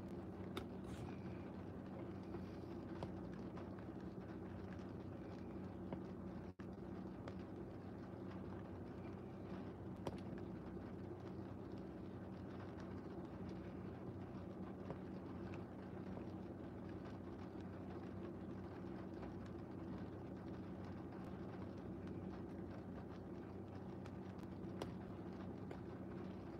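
Faint, steady low hum inside a stationary car's cabin, with a few faint ticks, one about ten seconds in.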